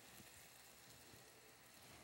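Near silence, with a faint steady sizzle of a flour-dusted crab cake frying in oil in a skillet.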